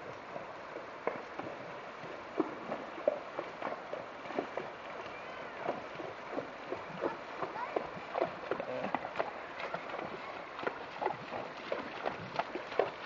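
Horses wading across a shallow, rocky creek: irregular splashes and knocks of hooves on water and stones over the steady rush of flowing water.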